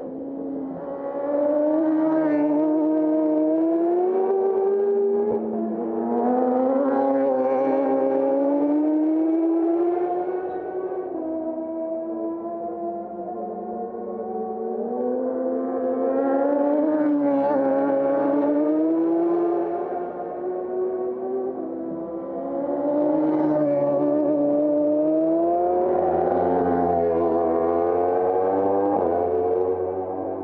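Slow ambient music: several sustained tones layered together, gently gliding in pitch and swelling in long phrases of a few seconds each.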